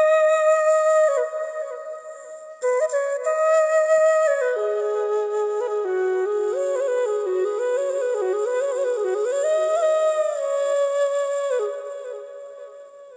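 Background music: a slow flute melody with long held notes and quick ornamented turns, dropping away briefly about two seconds in.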